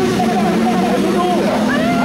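Several race cars running together on the starting grid, a steady low engine hum, with a voice over them.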